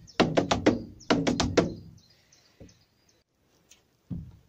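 Boots stepping on a wooden board in the hold of a canal boat: two quick groups of four steps, then a couple of faint taps. The steps are a step-dance rhythm ('bangers and mash') copying the beat of a canal boat's Bolinder engine.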